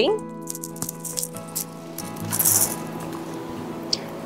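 A multi-strand bead necklace rattling and clinking as it is picked up, with a short burst of rattling a little past the middle. Soft background music with steady held tones plays underneath.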